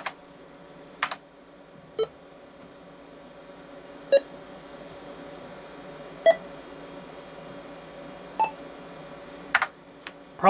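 Four short beeps from an old PC's internal speaker, about two seconds apart and each a little higher in pitch than the last, marking the counting numbers of an audio/video sync timer test. Two sharp clicks come about a second in and again near the end.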